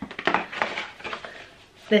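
A cardboard lipstick gift box being handled, with rustling, light clicks and knocks, mostly in the first second, as the box and the lipstick tubes in its tray are moved.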